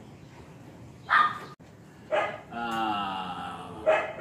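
A dog barking twice, about a second apart, then giving a long, drawn-out whine.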